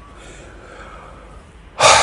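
Faint room tone, then near the end a man's sudden loud breath through the open mouth, gasp-like, that trails off slowly.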